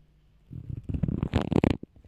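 Crackling, rustling handling noise close to the microphone, a burst lasting just over a second that starts about half a second in and is loudest near the end.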